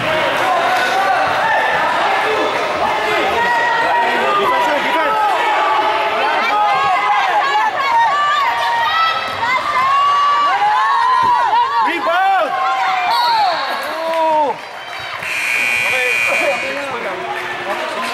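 Basketball shoes squeaking on a hardwood gym floor in a run of short squeals, over steady crowd chatter. About thirteen seconds in, whistles blow twice in quick succession, the second a fluttering tone, and play stops.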